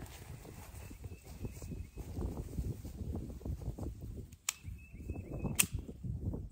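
Wind gusting over the microphone as an uneven low rumble, with two sharp clicks about a second apart near the end.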